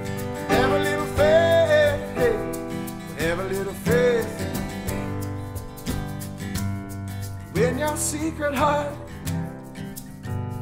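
Live acoustic song: a strummed acoustic guitar and backing chords under a singer's long, sliding held notes, which come in a few phrases with gaps between them.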